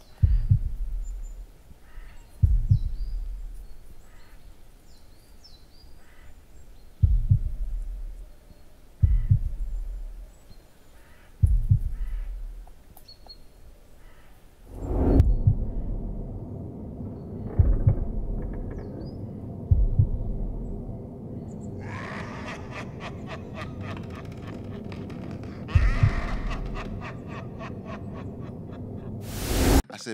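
Dark cinematic trailer sound design: deep booming hits every two to three seconds over an eerie ambience with faint bird chirps. About halfway through it swells into a dense, dark musical drone, which grows brighter and ends in a loud rising swell.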